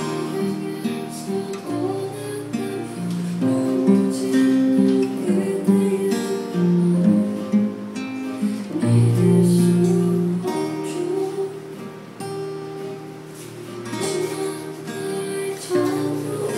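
Solo acoustic guitar with a capo, played fingerstyle: picked chords and melody notes left to ring.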